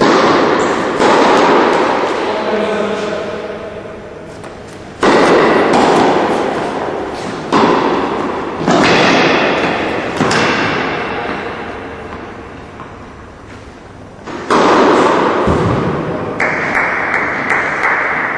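Tennis ball struck by rackets in a rally: several sharp hits a second or more apart, each followed by a long echo in a large indoor tennis hall.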